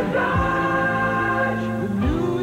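Car-commercial jingle: voices singing a long held chord over backing music, with a deep drum hit about half a second in.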